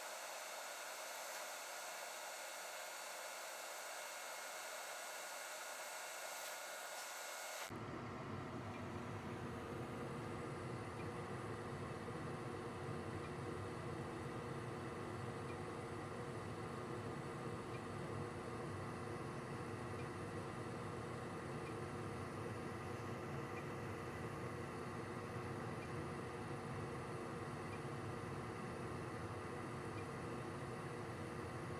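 Concord gas furnace running with its burners lit and circulating blower on: a steady rush with several steady hum tones. For the first eight seconds only a thin hiss is heard; the fuller low running sound comes in about eight seconds in.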